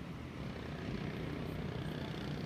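Low, steady engine drone of a passing inland container barge, growing slightly louder about a second in.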